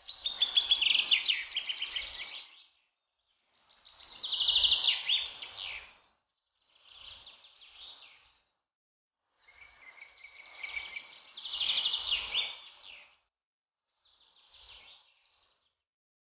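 Birds singing in short bursts of fast, high chirping trills, five times, with silence between the bursts.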